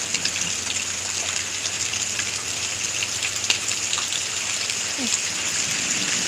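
Steady rain falling in a thunderstorm: an even, constant hiss with scattered faint drop ticks.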